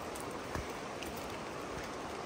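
Steady rain falling on the forest, an even hiss with scattered drop ticks and one sharper tap about half a second in.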